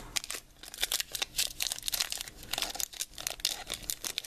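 Foil wrapper of a Pokémon trading-card booster pack crinkling in the hands and being torn open, a busy run of irregular crackles.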